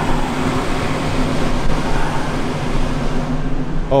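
Rooftop exhaust fan running: a steady hum over an even rush of air.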